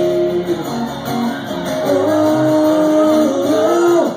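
Live country music played on two strummed acoustic guitars, steady and loud, with sustained notes and chord changes.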